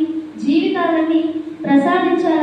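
Only speech: a woman talking into a microphone.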